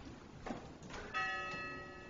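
A small metal bell struck once about a second in, ringing with several clear tones that fade slowly. A soft knock and a click come just before it.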